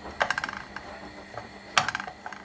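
Wooden spoon knocking and scraping against a nonstick frying pan as diced red onion is stirred: a quick run of clicks just after the start, and one louder knock near the end.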